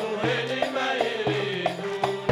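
Men's chorus singing a Jordanian folk song together, over a steady beat of about two strokes a second.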